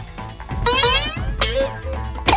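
Background music with an added cartoon-style effect: a quick run of short gliding tones about a third of the way in, then a sharp hit.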